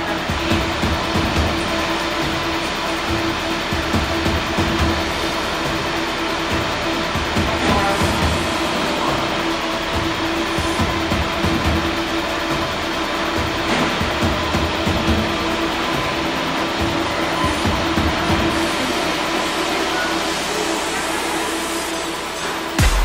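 Delivery truck's engine and hydraulics running steadily as a shipping container is lowered and slid off the truck's tilted bed, with a constant hum over a rough low rumble.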